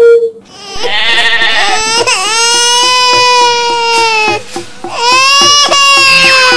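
A loud, drawn-out wailing cry in two long held notes, the second starting about five seconds in, with a faint quick ticking underneath.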